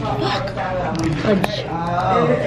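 A woman talking and swearing, with a single sharp click about one and a half seconds in.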